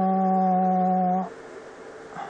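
A man's long, drawn-out hesitation sound, "anoo…", held on one flat pitch and breaking off about a second in.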